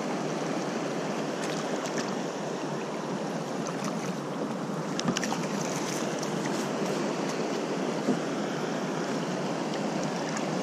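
Steady rush of flowing river water at a rapid, with a couple of brief sharp clicks about five and eight seconds in.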